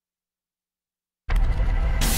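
Dead silence for over a second, then a loud sound effect with a heavy low rumble cuts in abruptly: the opening sting of a TV news promo.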